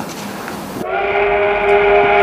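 Steam locomotive whistle blowing one long steady note, starting about a second in after a short stretch of hiss-like noise.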